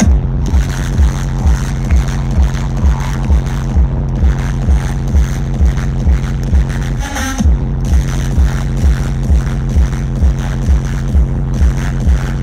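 Loud electronic dance music through a festival sound system: the drop hits at the start, with a heavy four-on-the-floor kick drum at about two beats a second over a deep pulsing bassline. There is a short break in the beat about seven seconds in, before it comes back in.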